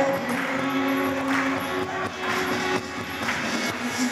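Live youth praise band playing a worship song.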